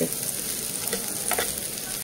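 Cubed boiled potatoes with crushed peanuts being stirred in a nonstick frying pan with a plastic spatula, over a steady frying sizzle, with a couple of light spatula taps in the second half.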